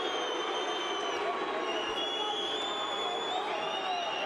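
A large arena crowd cheering and shouting in a steady roar, with long high whistles carrying over it.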